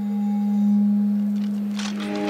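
A single sustained low drone from the film's score, holding one steady pitch, swelling to its loudest about midway and then easing off.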